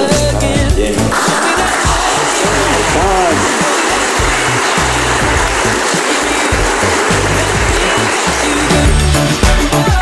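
Wedding guests applauding in a church, over background music with steady low notes; the clapping starts about a second in and fades out near the end.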